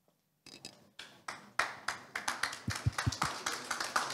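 Audience applause: a few scattered hand claps start about half a second in and thicken into steady clapping from a small crowd.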